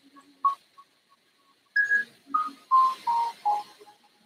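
A short melody of clear, whistle-like single notes: a few faint notes early, then a louder phrase that starts high and steps down over about five notes.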